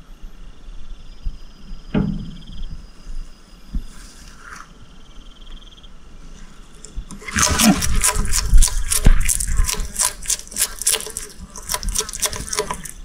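A bearded dragon crunching and chewing a darkling beetle: a dense run of sharp, irregular crunches and clicks that starts about seven seconds in.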